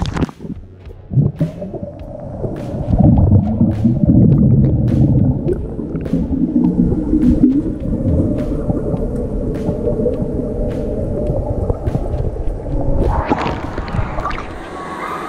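Pool water heard through a GoPro camera held underwater: a muffled low rumble and gurgling of water and bubbles, with scattered faint clicks. The camera comes up near the end and the splashing at the surface sounds clear again.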